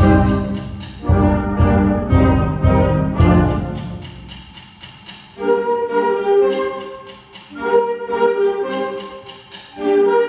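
Student concert band of woodwinds and brass playing. It begins with loud, bass-heavy full-band chords with strong accents, which fade away, and from about five seconds in it moves to a lighter, higher passage of held woodwind notes.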